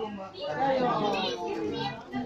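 Several people talking indistinctly, children's voices among them.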